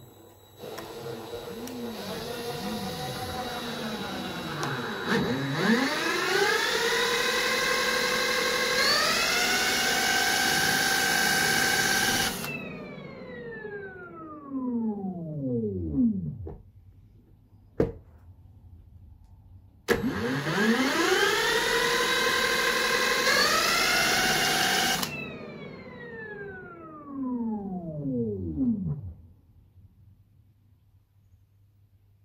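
A power drill spins the rotor of a Fisher & Paykel SmartDrive washing-machine motor, run as a generator, twice over. Each time a whine rises in pitch for about ten seconds, stepping up once along the way, then the drill's noise cuts off and the whine falls away as the rotor coasts down.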